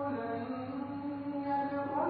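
A man's voice chanting Quranic Arabic recitation, drawing out long held notes with melodic turns.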